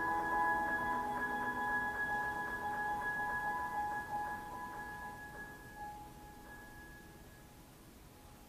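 Steinway concert grand piano: held notes ringing on and dying away, with a few soft notes over them, fading to near silence near the end.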